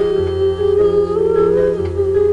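Female singer humming a wordless melody with slow, gliding held notes over instrumental accompaniment with a steady bass line, in a live song performance.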